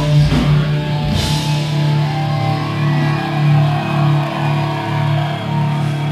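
Live rock band with distorted electric guitars, bass and drums. The drums play for about the first second and a half and then drop out, leaving the guitars and bass holding a sustained chord over a pulsing low note.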